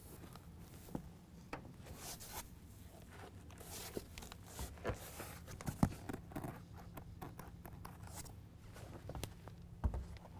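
Faint cloth rubbing and rustling as a rag wipes down the painted truck-bed side, with a few short knocks from moving about on the carpet bed liner, over a steady low hum.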